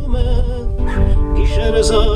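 A man singing to his own acoustic guitar accompaniment, his voice holding wavering notes over plucked and strummed chords.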